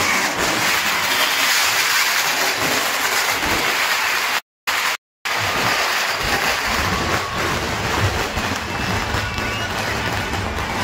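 A large, dense street crowd cheering and shouting together, with low vehicle rumble underneath. The sound drops out completely twice, briefly, a little before the middle.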